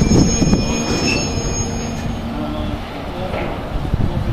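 Open freight wagons rolling slowly past on the rails, their wheels rumbling and knocking, with a steady high wheel squeal that stops about two seconds in.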